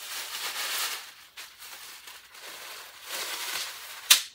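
Paper wrapping rustling and crinkling as a wig is unwrapped and lifted out, in two spells: one in the first second and another shorter one about three seconds in.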